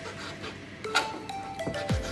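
Background music with steady mallet-like melodic notes. About a second in, a single sharp click sounds as a knife blade meets a plastic cutting board.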